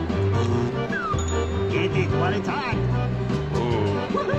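Slot machine bonus-round music with a steady, pulsing bass line. Short electronic sweeps and chirps sound over it: one falling sweep about a second in, a cluster of rising chirps around two and a half seconds, and another falling sweep near the end.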